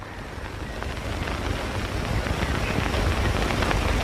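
Stream water running, a steady rushing noise that grows louder over the first couple of seconds.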